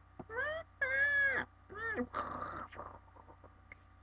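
A girl's high-pitched squealing cries in a character voice, 'Ahh!': a short rising one, a longer held one and a brief one, then a breathy rush of noise about two seconds in.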